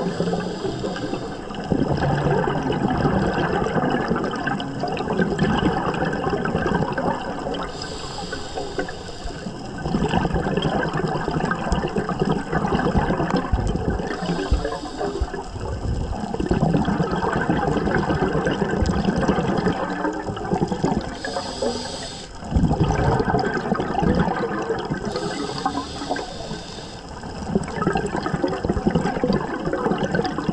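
Scuba diver breathing through a regulator underwater: steady bubbling and rushing of exhaust bubbles, with a higher hiss about every six seconds as a breath is drawn.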